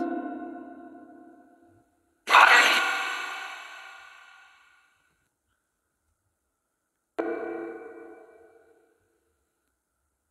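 Two ringing, echo-drenched ping-like sounds: a louder one about two seconds in and a quieter one about seven seconds in, each dying away over a second or two.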